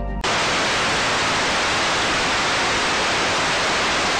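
Analog television static: a steady, even hiss of white noise that starts abruptly a moment in, right after a brief bit of music.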